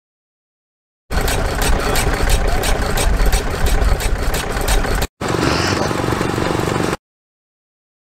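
Vintage stationary engine with twin spoked flywheels running, a steady rapid beat of firing strokes over a low rumble, starting about a second in and cutting off suddenly after about four seconds. It is followed by a shorter stretch of another running machine that also stops abruptly.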